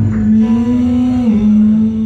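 A man's voice singing one long held note that steps down a little in pitch partway through, over strummed acoustic guitar in a live acoustic performance.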